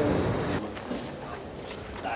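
A voice trails off in the first half second, then footsteps and a few faint knocks of people walking with bags.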